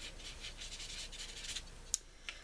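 Spectrum Aqua watercolour marker tip rubbing on drawing paper, a faint soft scratching as shading is stroked in. A single sharp click near the end.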